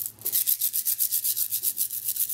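A strand of shiny plastic Mardi Gras beads rubbed and shaken between cupped palms as a shaker. It makes a fast, even rattling rhythm of about ten strokes a second that starts just after the beginning.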